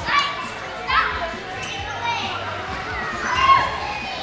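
Children's voices chattering and calling out in a gymnasium, with a few louder high-pitched calls, the loudest near the end.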